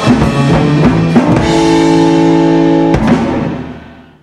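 Live rockabilly band (upright double bass, electric guitar and drum kit) playing the ending of a song: a run of drum hits, a held chord, then one last hit about three seconds in, after which the sound dies away.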